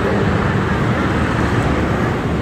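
Steady road traffic and engine noise, a continuous low rumble.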